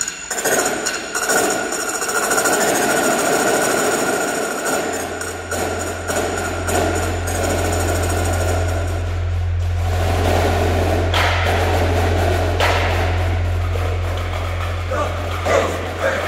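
Electronic backing track of a percussion show playing through a PA speaker: sustained synth textures, joined about five seconds in by a deep steady bass drone, with a few sharp hits in the second half.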